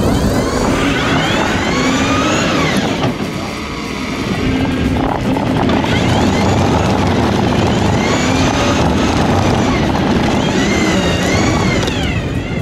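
Tyres squealing in repeated long, wavering screeches as an electric go-kart desk slides through donuts.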